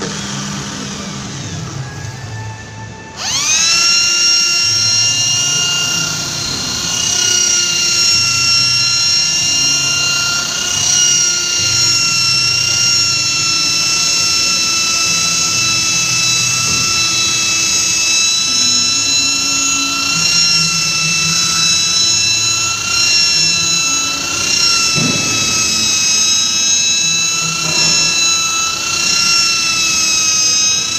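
Electric rotary polisher with a small round pad switching on about three seconds in: a quick rising whine that settles into a steady high motor whine, wavering slightly in pitch as the pad is worked over the windshield glass to polish out wiper scratches.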